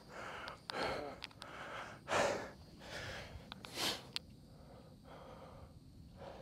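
A person breathing hard: five or six heavy breaths about a second apart, stopping about four seconds in, with a few faint clicks among them.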